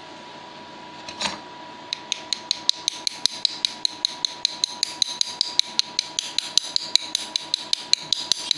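Repeated knocking on a graphite ingot mould to free a stuck Rose's metal bar: a single knock about a second in, then a rapid, even run of sharp, light taps, about five a second.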